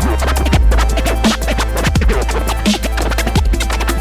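Vinyl scratching on a portable turntable: a record dragged back and forth under the stylus in quick pitch-sliding strokes, chopped on and off by a Mixfader crossfader, over a beat with a sustained deep bass.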